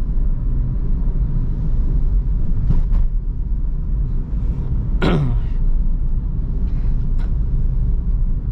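Steady low rumble of a Suzuki Ertiga's engine and tyres heard from inside the cabin while driving, with a brief falling sound about five seconds in.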